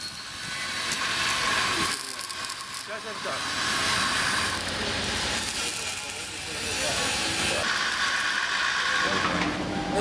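Electric arc welding: a steady crackling hiss from the arc as steel bars of slat-armour protective screens are welded onto an armoured personnel carrier, with brief breaks as the welder pauses.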